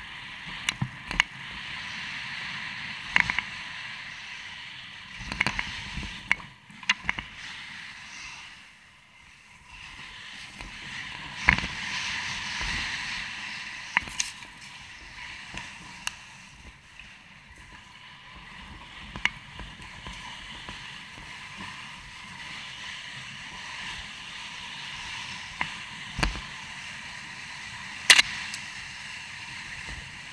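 Mountain bike ridden fast over a dirt woodland trail: a steady rush of tyre and wind noise, broken by sharp, irregular clacks and knocks as the bike hits bumps and roots.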